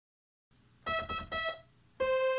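Sequential Prophet Rev2 synthesizer playing a keyboard patch: four quick, short notes at nearly the same pitch, alternating, starting just under a second in.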